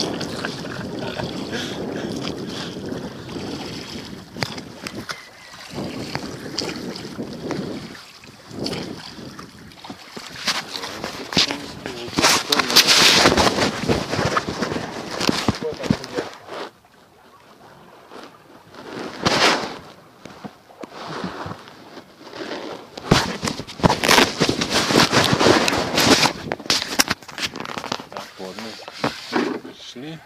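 Wind rushing over the microphone of a handheld phone in an open rowing boat at sea, broken by two stretches of dense crackling and knocking from the phone being handled, around the middle and again late on.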